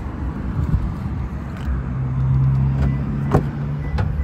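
Rear door of a Toyota Hilux dual cab being unlatched and opened, with a sharp latch click a little after three seconds in, over a steady low engine hum.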